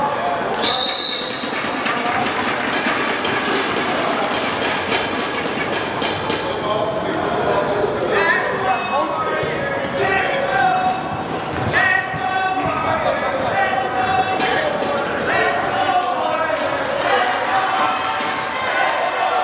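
Basketball game in a gymnasium, echoing: the ball bouncing and shoes on the hardwood, a short referee's whistle blast about a second in, and spectators' voices and shouts over it.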